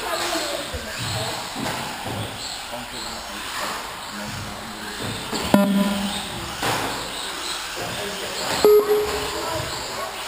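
1/18-scale brushless electric RC cars racing on an indoor track: a steady mix of motor whine and tyre noise, with a few sharp hits, about halfway through and again near the end.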